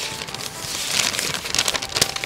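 A folded paper letter being opened out by hand, the sheet rustling and crinkling in a run of quick crackles.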